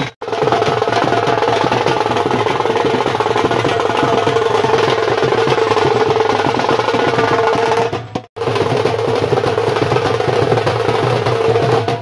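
Loud music with steady drumming, dropping out briefly just after the start and again about eight seconds in.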